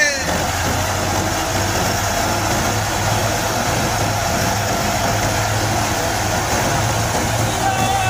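New Holland 640 tractor's diesel engine driving a drum thresher as straw is fed in: a steady, even drone of engine and threshing drum with a constant low hum.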